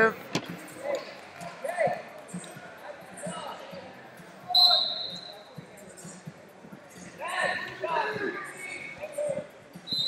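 Echoing wrestling-arena sound: thuds of bodies and feet on the mat and voices shouting around the hall. A short high tone sounds about four and a half seconds in.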